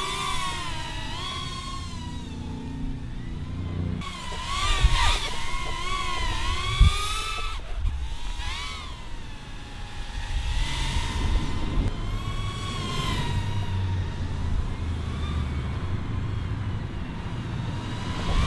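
Eachine QX90 brushed micro quadcopter in flight, its brushed motors and tri-blade props giving a high whine that rises and falls in pitch as the throttle changes.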